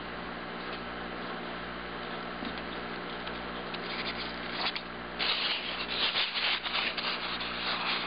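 Fingers and pins rubbing and scratching against a styrofoam block, growing louder and denser about five seconds in, over a steady low hum.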